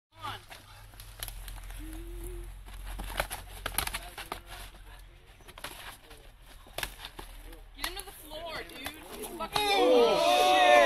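Faint, indistinct people's voices with scattered sharp knocks and clicks over a low hum, then loud shouting voices that break in about half a second before the end.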